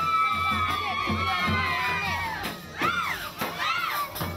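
Crowd of children shouting and cheering over band music with a drum beat. A long high cry is held and slowly falls over the first two seconds, then short rising-and-falling calls follow.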